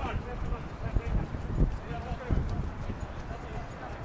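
Voices of footballers calling out on an outdoor pitch, heard from a distance, with a few low thumps about one, one and a half and two and a quarter seconds in.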